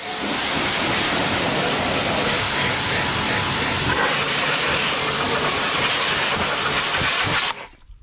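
Pressure washer jet spraying water into a car's wheel well and over the brake caliper and disc: a steady hiss of spray that cuts off suddenly near the end.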